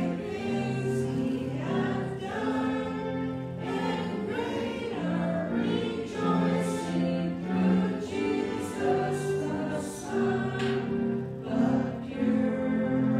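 A choir singing a hymn-like piece in slow, held chords, the sung words audible as soft sibilants over the sustained harmony.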